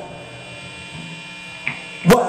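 Live band's amplifiers humming faintly with a few steady held tones, during a stop in a rock song.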